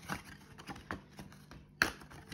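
Paper scratch-off lottery tickets being handled and pulled from a stack: soft rustles and a few small clicks, the sharpest near the end.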